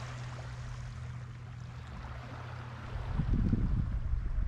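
Small waves lapping at a sandy shoreline, with a light breeze. About three seconds in, a louder uneven low rumble of wind on the microphone starts.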